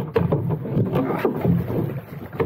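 Water sloshing and slapping against the hull of a small sailing dinghy, with irregular knocks from the hull and fittings as the boat is pushed off from a wooden dock.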